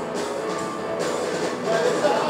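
A live band playing, with electric guitar, drums and percussion, recorded from the audience in the hall.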